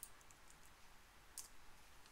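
A few faint clicks from a computer keyboard, the loudest about one and a half seconds in, over near-silent room tone.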